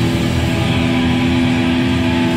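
Hardcore band playing live and loud, with distorted electric guitar and bass holding a steady, droning chord.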